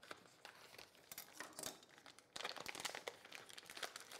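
Faint crinkling and rustling of clear plastic packaging, in short irregular crackles, as a roll of commercial phyllo dough is cut free and slid out of its plastic tray and sleeve.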